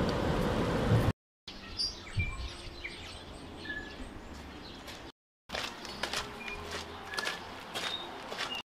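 Steady road noise inside a moving car for about a second, cut off abruptly. Then scattered short chirps of small birds over a faint outdoor background, broken by another brief dropout.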